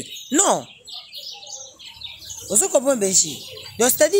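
A person's voice: a short exclamation that sweeps up and back down in pitch about half a second in, a quieter stretch, then talking again from about two and a half seconds.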